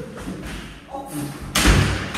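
An interior door slammed shut with a loud thud about one and a half seconds in.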